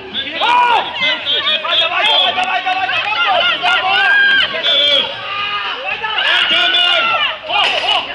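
Several people shouting and talking over one another, loud and continuous, with crowd noise behind.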